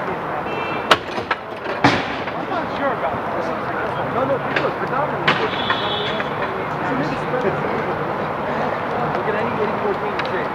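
Outdoor roller hockey rink ambience: indistinct players' voices and chatter over steady city background noise, with a few sharp knocks in the first two seconds and again around the middle.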